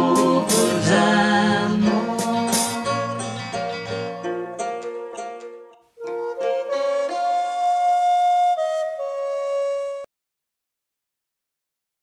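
Instrumental ending of a folk sea song: a wooden recorder melody over banjo and backing, fading out by about five seconds. A second short phrase of long held recorder notes follows and cuts off abruptly about ten seconds in.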